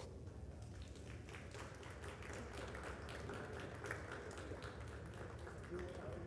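Faint hubbub of a roomful of people: indistinct murmured talk with scattered light taps and shuffles.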